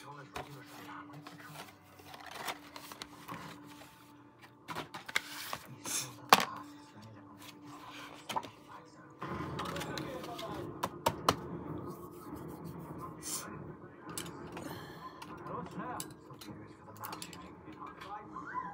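Cardboard packaging of a twelve-jar Sakura poster colour set being opened and handled: rustling and scraping of the box and tray, with scattered irregular knocks and taps of the plastic paint jars and cardboard, the sharpest about six seconds in.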